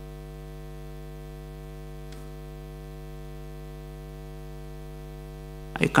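Steady electrical mains hum, a low buzz with many evenly spaced overtones, with a faint tick about two seconds in.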